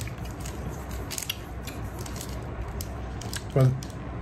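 Someone chewing a sticky, caramel-like candy: scattered small wet clicks from the mouth over a low rumble.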